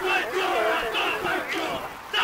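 A group of women rugby players shouting a war-cry chant in unison, in short loud phrases.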